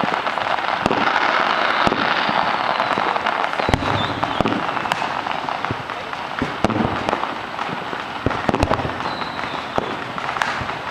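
Fireworks going off across a neighbourhood: a continuous dense crackle with many sharp bangs at irregular moments, and a thin falling whistle twice.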